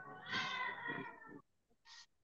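A cat meowing once, one long call of about a second and a half, heard over a video-call line, with a short hiss near the end.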